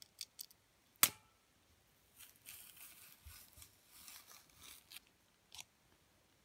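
A banana being opened by hand: the stem snaps with a sharp crack about a second in, then the peel is pulled back in strips with soft, irregular rustling and tearing.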